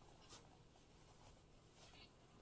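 Near silence, with a few faint rustles as the wool-and-silk poncho fabric is handled and adjusted around the belt.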